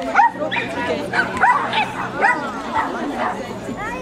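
A dog barking excitedly in rapid, short, high-pitched yaps, about two or three a second, during an agility run.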